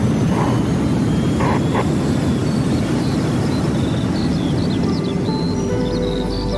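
Radio station intro jingle: a steady low rushing noise bed, with short chirping calls like birdsong joining about halfway and sustained musical tones coming in near the end.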